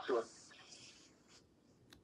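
A person's voice finishing a word, then a faint high rustle for about a second and a small click near the end.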